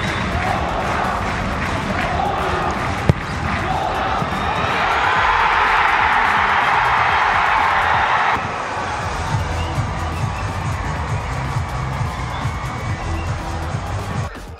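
Football stadium crowd noise that swells into cheering for a headed goal, then cuts off abruptly about eight seconds in, under a background music bed with a steady beat. A single sharp thump of a ball being struck comes about three seconds in.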